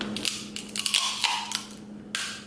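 Close-miked eating of mussels: a string of sharp, wet clicks and smacks from chewing and handling the shells.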